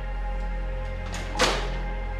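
Background music with steady held notes, and partway through a single thunk of an oven door being shut.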